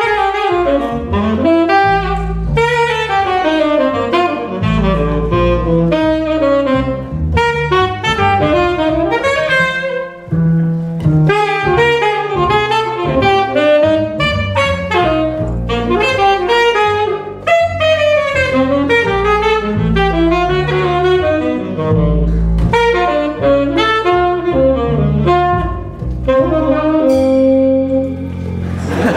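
Tenor saxophone improvising a fast, continuous jazz line over an upright double bass playing a steady line of low notes. The saxophone settles on a held note near the end.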